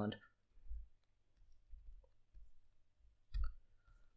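Faint room tone with faint low thumps and one sharp click just over three seconds in, from a computer key or mouse button as the screen is switched to a terminal.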